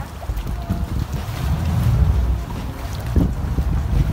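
Small passenger boat under way: a steady low rumble from its motor and hull, mixed with wind buffeting the microphone.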